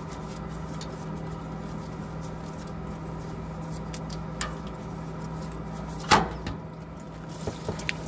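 Spin-on diesel fuel filter being unscrewed by hand from its housing: light clicks and scrapes as it turns, with a sharp knock about six seconds in and a few small knocks near the end. A steady low hum runs underneath.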